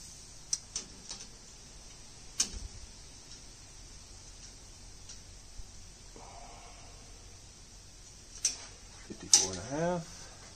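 A few sharp, isolated clicks and taps from handling a steel tape measure against the car's metal tubing and body, the loudest about two and a half seconds in and near the end. A short murmur of a man's voice follows right at the end.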